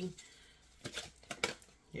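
Tarot cards being shuffled by hand: a few light clicks and taps of the cards near the middle, otherwise quiet.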